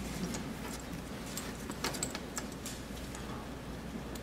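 Faint, scattered clicks and light taps over a steady low hum and hiss: small handling noises in a quiet hall between the spoken introduction and the first notes.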